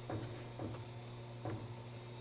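Faint handling sounds of fingertips pinching and smoothing a small ball of polymer clay: three soft ticks or rubs, about a second in and near the halfway point, over a steady low hum.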